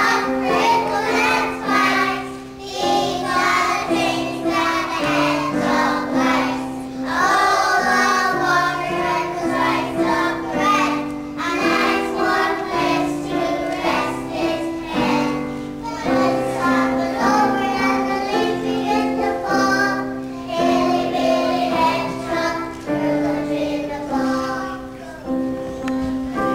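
A group of young children singing a song together over an instrumental accompaniment of held notes, in phrases with short breaths between them.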